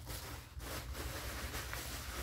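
Faint rustling of gift wrapping being handled and unwrapped, over a steady low hum.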